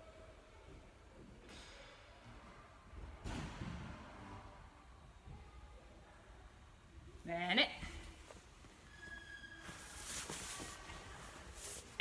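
Faint rustling of a cotton karate uniform as a seated person holds a stretch and then shifts position on tatami mats, with a short vocal sound rising in pitch about seven and a half seconds in.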